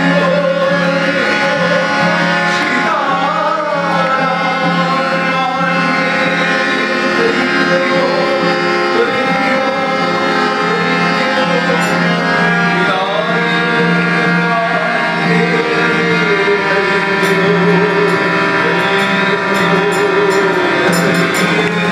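A harmonium holding a steady drone and chords, accompanying a man singing a devotional prayer song (prarthana) with slow, wavering melodic lines.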